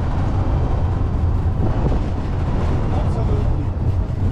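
Steady low rumble of road and wind noise while riding in an open tuk-tuk over cobblestone streets, with faint voices near the end.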